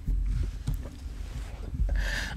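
Low rumble with a few faint knocks: microphone handling and body movement close to the mic during a pause in talk.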